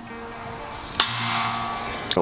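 A single sharp snap about a second in: a composite shim breaking off at the edge of a railing post's base plate.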